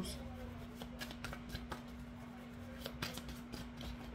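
A tarot deck being shuffled by hand: quiet, irregular card clicks and slides over a faint steady hum.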